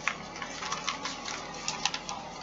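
Packaging crinkling and rustling in the hands as a parcel is unwrapped: a run of short, irregular crackles, with a couple of sharper ones near the end.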